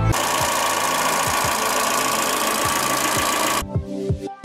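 Electronic background music in a white-noise sweep section: a loud hiss over a kick-drum beat, cutting off sharply shortly before the end when the melody returns.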